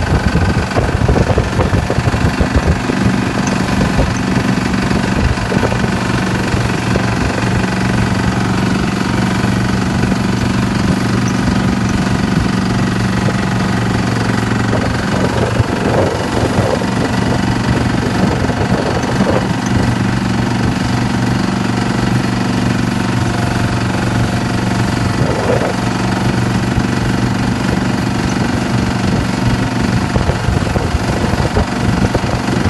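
Fishing boat's engine running steadily at a constant low pitch while the net is hauled, with occasional faint knocks from the net gear.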